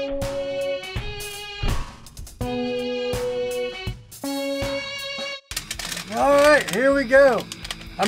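Background music with held chords over a steady beat, which cuts off suddenly about five and a half seconds in. A man's voice follows near the end.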